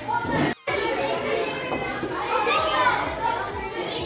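Many children talking and calling out at once in a large room, a steady hubbub of kids' voices, which cuts out for a moment about half a second in.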